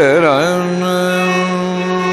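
Carnatic singing by a male voice. An ornamented, wavering phrase settles about half a second in into one long, steady held note.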